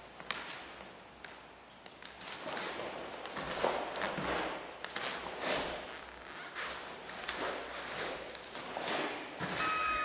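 A karateka performing a kata: bare feet stepping and sliding on foam mats, and a cotton karate uniform swishing with each technique, in short irregular bursts.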